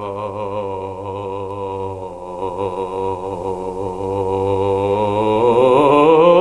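A man's operatic voice holding one low note in the deep chest register with a steady vibrato, then beginning to slide upward in pitch near the end, as part of one continuous cadenza across his whole range.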